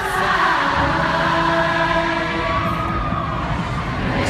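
Live band music in a large arena, with singing in long held notes and the noise of a big crowd under it.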